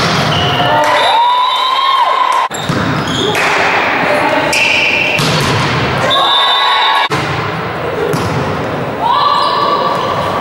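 Indoor volleyball play echoing in a large sports hall: thuds of the ball being hit, players calling out, and footwork on the court. The sound breaks off abruptly twice, at the cuts between rallies.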